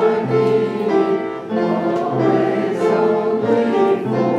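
Congregation singing a hymn in slow, held notes with instrumental accompaniment.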